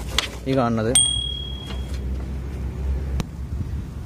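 A few spoken words, then a sharp metallic click about a second in with a brief high ring that dies away, over a steady low rumble; a faint second click comes near the end.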